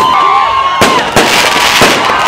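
Aerial fireworks going off with loud sharp bangs, about three in the second half. Rising-and-falling whistles and crowd noise can be heard under them.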